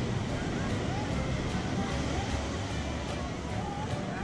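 Ocean surf breaking and washing up a sandy beach, a steady rush of noise, with faint distant voices of people in the water.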